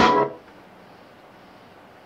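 Beat playing back from an Akai MPC Live, drums over held keyboard tones, stopped abruptly a fraction of a second in, leaving only a faint steady hiss.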